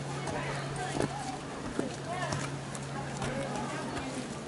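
Footsteps climbing concrete steps, with a couple of sharper steps about one and two seconds in, under indistinct voices of people nearby and a steady low hum.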